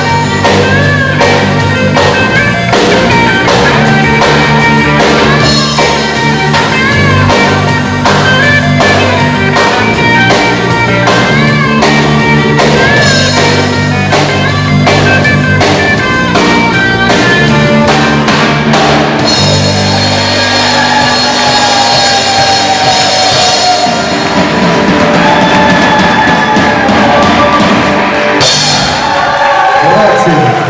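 Live rock band playing an instrumental passage: electric bass, drum kit and electric guitar on a steady beat. About two-thirds of the way through, the bass and drum beat stops and held chords and cymbals ring on.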